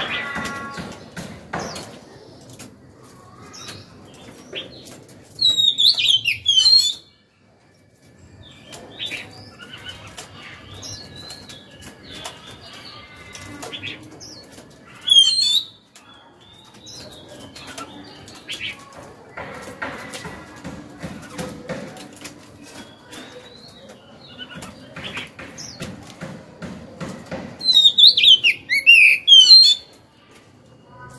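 Oriental magpie-robin singing in three loud bursts of rapid, varied whistled notes: a phrase of about a second and a half some five seconds in, a short one midway, and a longer one near the end. Quieter chirps and scattered clicks fill the gaps.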